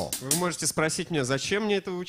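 Speech only: a voice talking continuously, with no drumming or music.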